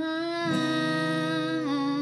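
A woman's singing voice holds one long note, dipping slightly in pitch near the end, over a strummed acoustic guitar chord left ringing.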